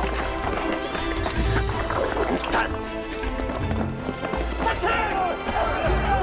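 Dramatic film score with sustained tones and repeated low pounding hits, with voices shouting over it that grow busier near the end.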